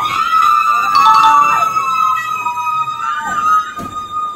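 Young women's long, high-pitched shriek, held on one note for about four seconds, sliding up at the start and dropping off at the end, with a second, lower shriek joining for part of it.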